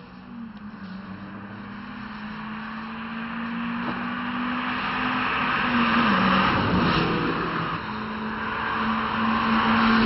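Cars at track speed passing close by, engines running hard. The sound swells to a peak as one car goes by about six seconds in, eases off, then builds again near the end as the next cars approach.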